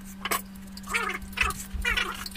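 A large cucumber being peeled by scraping its skin with a handheld metal grater: a few short, squeaky scraping strokes over a steady low hum.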